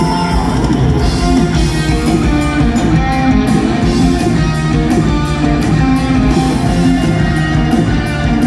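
A live rock band plays with electric guitars over a drum kit, at full volume, with a steady drum beat.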